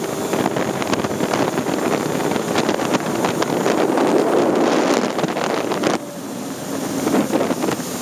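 Personal watercraft running at speed over shallow water, its engine mixed with water spray and heavy wind buffeting on the microphone. The sound eases off about six seconds in, then builds again.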